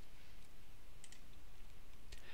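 Steady low hiss of room tone and recording noise in a gap in the narration, with one faint short click about halfway through.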